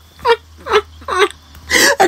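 A woman's soft, breathy laughter in three short bursts about half a second apart, then a louder breathy burst near the end.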